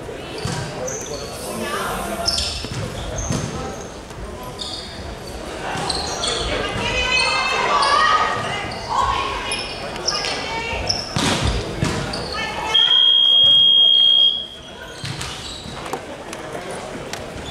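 Basketball game play on a hardwood court: sneakers squeaking, the ball bouncing and players' voices. Near the end comes one loud, steady, high-pitched signal tone lasting about a second and a half, after which the court goes quieter.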